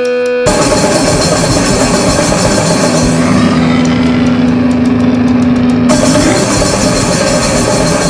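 Grindcore band kicking in about half a second in, after a held tone: heavily distorted guitar and bass over fast, loud drums and cymbals. A guitar note is held for a few seconds in the middle before the riff changes.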